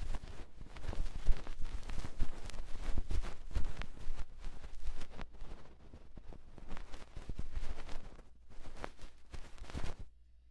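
A cotton swab rubs and scrapes against the silicone ear of a 3Dio binaural microphone, heard as dense, close crackling. It eases off briefly about six seconds in and again near the end.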